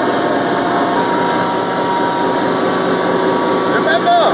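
Loud, steady machinery drone with a few faint steady tones underneath, from the running diesel engine compartment of a Kilo-class diesel-electric submarine.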